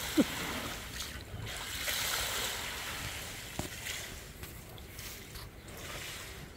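Water sloshing and trickling in a galvanized stock-tank pool as a tiger moves about in it among floating blocks of ice.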